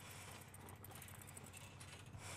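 Near silence: faint outdoor ambience with a low steady hum and a few faint light clicks.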